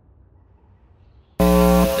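Faint low hum, then about a second and a half in a loud, flat buzzer tone that starts abruptly and lasts about half a second: an edited-in 'wrong answer' buzzer sound effect announcing a con.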